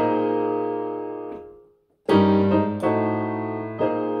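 Chords played on a Yamaha digital keyboard with a piano voice. A held chord fades out to silence just before halfway, then a new chord is struck and followed by a few more chord changes.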